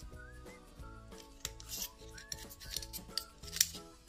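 A paring knife working open a Manila clam shell and scraping it, heard as a few short clicks and scrapes, the sharpest about a second and a half in and again near the end. Soft background music plays under it.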